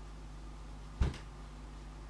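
A single short thump about a second in, over a steady low hum.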